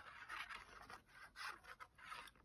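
Faint scratching of a liquid glue bottle's fine-tipped nozzle dragged across card stock as glue is squeezed out in squiggles, in a few short strokes.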